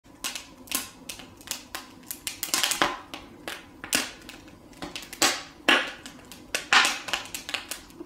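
A cat's claws catching and scratching at a knitted sweater as it paws at it: irregular sharp clicks and short scratchy rasps, several a second.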